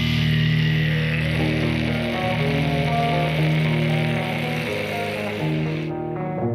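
Distorted heavy metal band playing over sustained low notes. About five and a half seconds in, the distorted wall drops out, leaving separate, cleaner plucked notes.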